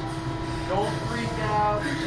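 Steady mechanical hum with a low rumble from the slingshot ride's machinery, with two short, indistinct voices over it.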